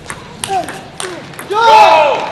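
Table tennis rally: the celluloid ball clicks sharply off bats and table about every half second, with short squeaks of shoes on the court floor between hits. Near the end a much louder, longer squeal-like pitched sound comes in.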